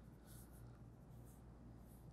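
Faint scratching of a colored pencil shading on paper, in a few short strokes, over a low steady hum.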